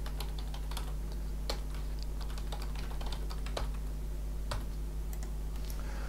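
Typing on a computer keyboard: irregular, scattered key clicks as code is entered, over a steady low hum.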